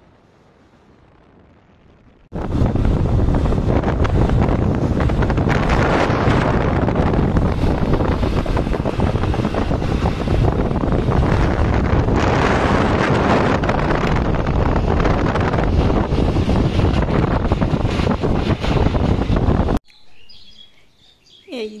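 Wind buffeting a phone's microphone on a moving motorcycle, a loud, even rush that starts suddenly a couple of seconds in and cuts off abruptly near the end.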